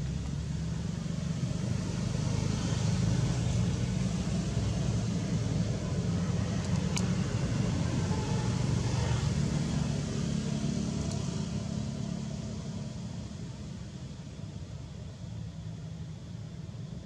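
Low rumble of a motor vehicle passing nearby, growing louder a couple of seconds in and fading away over the last few seconds.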